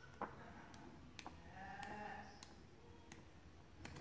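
Faint clicks and light handling noises from a stiff card booklet being turned over and its pages opened by hand, about seven sharp ticks in all. A faint, drawn-out pitched sound sits in the background about two seconds in.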